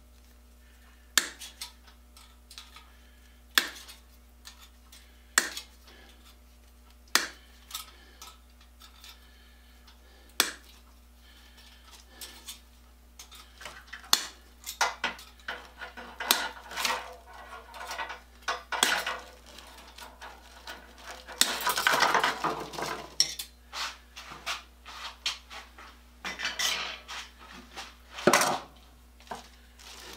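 Steel wire rack being clipped to size and handled. Sharp metal clicks come about every two seconds at first, then the wire rattles and clinks more busily, with a longer, louder burst of rattling about two thirds of the way through.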